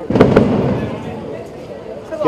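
Two sharp cracks in quick succession about a quarter of a second in, followed by a rush of noise that fades away over a second and a half.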